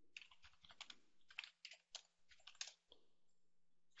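Faint computer keyboard typing: a quick run of keystrokes over the first three seconds or so as a short command is entered.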